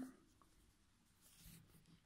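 Near silence, with faint rustling of yarn and a metal crochet hook being worked through stitches, a little louder about one and a half seconds in.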